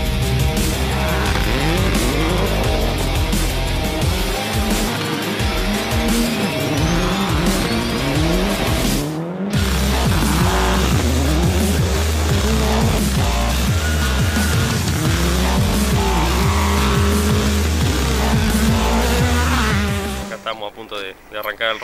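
Rally car engines revving hard and shifting up through the gears, heard as repeated rising pitch sweeps, laid over electronic music with a steady heavy bass. The sound drops out briefly about nine seconds in.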